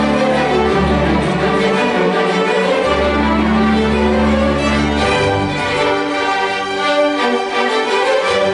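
String orchestra of violins, cellos and double basses playing, with held low notes under the melody that thin out after about five seconds.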